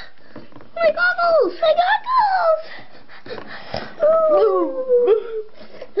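A child's high-pitched voice making wordless, sliding play calls: several quick rising-and-falling calls, then one long falling call about four seconds in.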